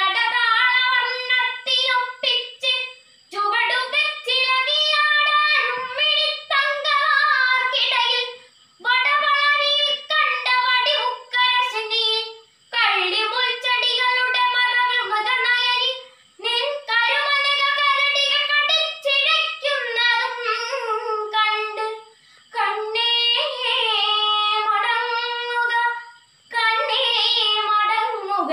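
A girl singing a Malayalam poem unaccompanied in the melodic kavithaparayanam recitation style, in phrases of a few seconds each broken by short pauses for breath.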